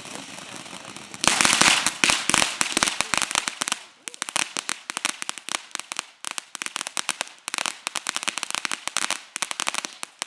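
Ground fountain firework hissing as it sprays sparks, then from about a second in breaking into dense, rapid crackling. The crackling is loudest for the next few seconds, then comes in quicker clusters of pops to the end.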